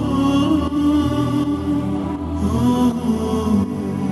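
Slow devotional music with a long, drawn-out chanted vocal line that glides slowly in pitch.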